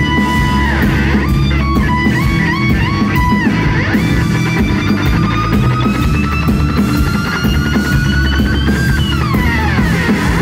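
Live rock band with an electric guitar solo over bass and drums. The guitar plays held notes bent up and back down, then one long note that slowly bends upward before sliding down near the end.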